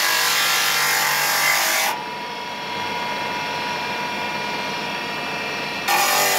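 Electric motor with a thin cutting disc grinding into a block of pink rock salt, a loud, steady, gritty hiss. About two seconds in it drops suddenly to a quieter, duller running with a steady whine, and the full grinding comes back suddenly at the very end.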